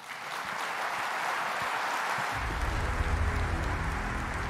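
Audience applauding. About two seconds in, music with a deep bass comes in under the applause.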